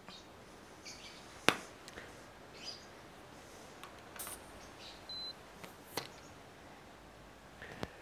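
Gloved hands handling a CO2 inflator head and a tyre pressure gauge at a bicycle tyre valve: a few sharp clicks and taps, the loudest about a second and a half in, with a brief hiss near the middle and a short high tone soon after.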